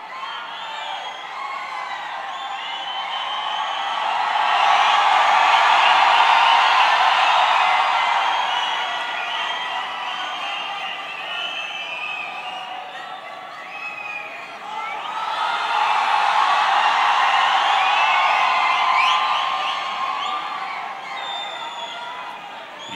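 A large arena crowd cheering, screaming and whooping in many voices at once. It swells twice to a loud peak, once about a quarter of the way in and again past the middle.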